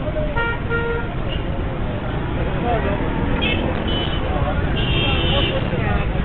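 Street traffic running steadily, with vehicle horns honking: a held horn about half a second in, short high beeps at about three and a half seconds, and another held horn near five seconds. Voices mix in with the traffic.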